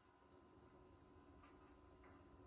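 Near silence: a faint steady hum and hiss, with a couple of faint ticks.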